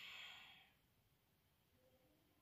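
The tail of a long, audible exhale by a woman, fading out within the first second and leaving near silence.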